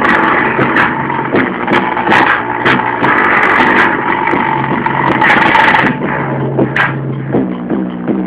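Music with a steady beat played loudly through a car-audio head unit and its speakers.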